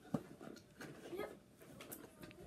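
Faint clicks and rustles of small plastic toy pieces and the cardboard calendar being handled, with a sharper click near the start.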